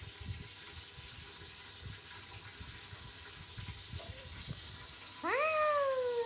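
Faint handling knocks over a low hiss, then, about five seconds in, a toddler's loud high-pitched vocal call that rises sharply and then slowly falls.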